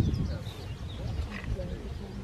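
Outdoor wind rumble on the microphone with low, murmured voices, and a few faint, short high bird calls in the first second.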